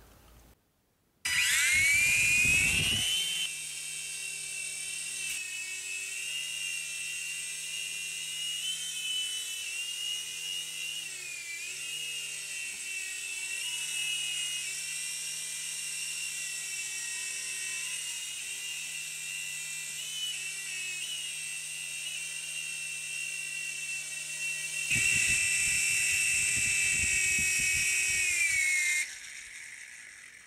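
Toy UDIRC infrared RC helicopter's small electric motors and coaxial rotors: a high whine that rises in pitch as the rotors spin up about a second in, then holds steady with small wavers in pitch while it flies. It is louder for a couple of seconds after lift-off and again for a few seconds near the end, then falls away in pitch and stops as the motors wind down.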